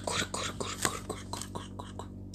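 A person's voice making rapid whispered syllables over a steady low hum.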